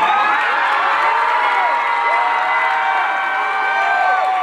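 Audience cheering and screaming with clapping, right after the performance music stops. Many high voices overlap at a steady level.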